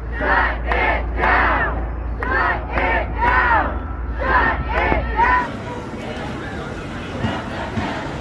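A crowd of protesters shouting a chant in unison, the phrases repeating in a steady rhythm, with wind rumbling on the microphone. A little past five seconds in it cuts off abruptly to a quieter city street background with faint voices.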